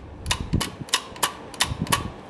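Snap-action switch mechanism of a vintage Frigidaire cold control being worked by hand: a series of sharp metallic clicks, about three a second and unevenly spaced, as the contact levers snap over.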